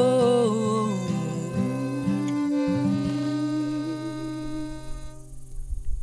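Male voice with acoustic guitar and fiddle: the singer holds a long note, then a long, steady lower note is sustained for about three seconds. The music drops away to a near-quiet pause about five seconds in.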